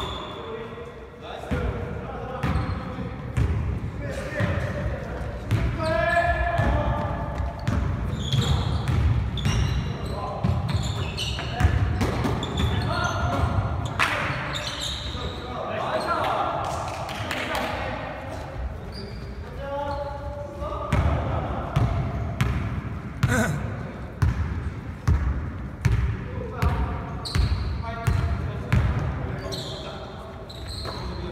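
A basketball bouncing repeatedly on a hardwood gymnasium floor during play, with players' shouts and calls scattered through, in a large hall.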